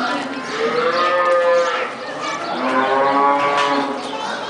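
Cattle mooing: two long moos one after the other, the second beginning about halfway through.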